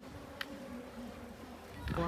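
A flying insect buzzing faintly, its pitch wavering, over quiet outdoor background, with one sharp click about half a second in.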